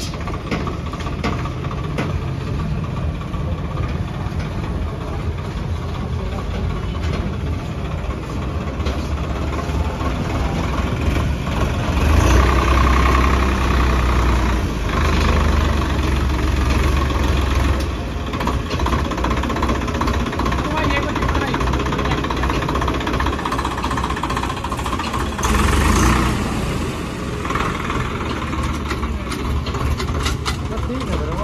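Swaraj 855 FE tractor's three-cylinder diesel engine running as it is driven down steel loading ramps off a trailer. The engine gets louder for several seconds near the middle, and briefly again later.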